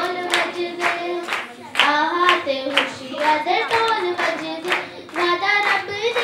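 A girl singing a Punjabi Christmas song into a microphone, with a group of children clapping along in a steady rhythm, a few claps a second.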